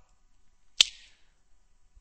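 A single sharp click a little under a second in, with a brief fading hiss after it, in an otherwise near-silent pause.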